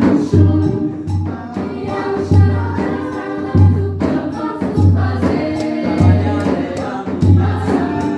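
Mixed vocal group singing in harmony over a drum beating a slow, steady low pulse, about one beat every second and a bit.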